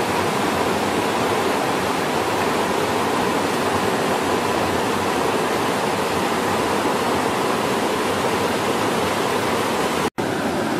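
A rocky stream and small waterfall running steadily: an even, unbroken hiss of water.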